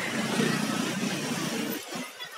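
A steady outdoor rushing noise, with no music over it, that drops away abruptly just before the end.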